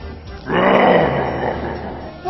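A man's rough, growling grunt in the voice of Frankenstein's monster, about a second long and falling in pitch. Background music runs underneath.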